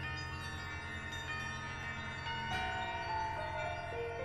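Piano with interactive electronic processing: piano notes blend into sustained, bell-like ringing tones. About two and a half seconds in, new notes are struck and the low sustained tones drop away.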